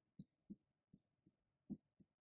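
Near silence: room tone broken by three faint, soft clicks, at about a quarter, half and one and three-quarter seconds in.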